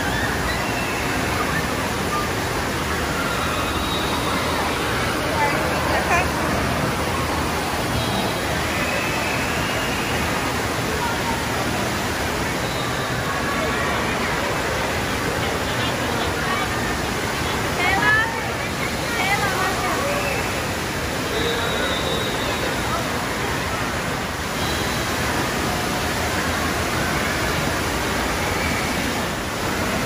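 Indoor water park: a steady rush of running and splashing water from the splash-play slides, with children's voices calling out and echoing across the hall. A burst of high children's voices stands out about two-thirds of the way through.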